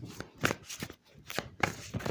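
A deck of tarot cards being shuffled by hand: a quick series of short, crisp rustling strokes as the cards slide against each other, several a second.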